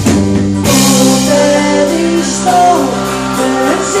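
A live band plays while a woman sings a melody over electric guitar and a plucked lute. A loud accent comes a little under a second in, and the band plays fuller after it.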